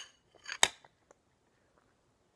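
Metal spoon clinking against a bowl, with a short scrape and a second sharp clink about half a second in.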